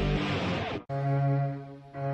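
A rock theme song with electric guitar cuts off abruptly a little under a second in. A cello then sounds one bowed note, held for about a second and fading out.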